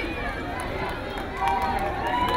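Outdoor crowd of many people talking and calling out at once. About one and a half seconds in, long held calls rise above the crowd.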